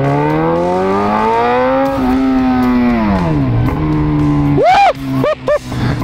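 Yamaha XJ6 inline-four motorcycle engine accelerating hard in first gear. Its note climbs for about two seconds, holds, then drops as the throttle closes and settles to a steady lower note. A short voice exclamation comes near the end.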